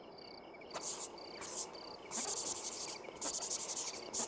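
Crickets chirping: short, evenly spaced high chirps about twice a second, with longer, louder rasping insect calls coming and going among them.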